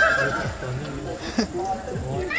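A person's long, drawn-out yell trails off in the first half-second, followed by quieter voices. There is a short click about a second and a half in.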